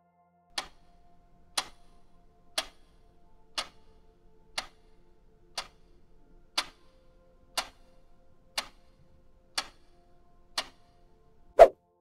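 Quiz countdown-timer sound effect ticking once a second, eleven ticks over a faint held musical pad, then a single louder ding near the end that marks time up and the answer being revealed.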